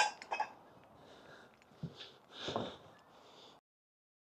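A few faint clicks and knocks, with a soft rustle about two and a half seconds in, then the sound cuts out to silence.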